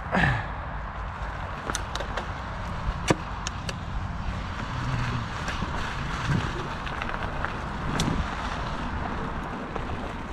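Steady rumbling hiss of movement along a loose gravel track, with scattered sharp clicks of stones, the sharpest about three seconds in, and a short falling sweep at the very start.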